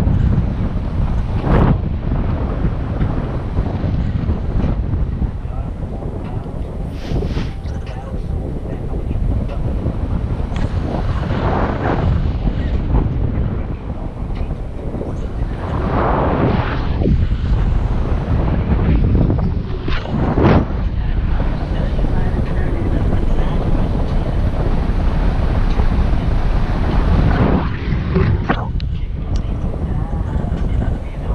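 Steady rush of airflow buffeting the microphone in flight under a paraglider, with brief stronger gusts every few seconds.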